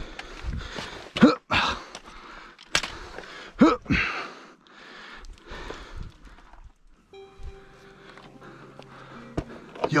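A man climbing a rock cliff: short grunts and hard breaths of effort with scuffing and scraping on the rock. About seven seconds in, a steady low humming tone with overtones comes in and holds.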